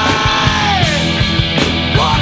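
Noise-rock band recording playing loud: distorted guitars, bass and drums with steady beats, and a held note that slides down in pitch during the first second.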